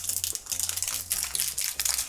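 Small candy wrappers crinkling as they are twisted open by hand: a rapid, uneven run of small crackles.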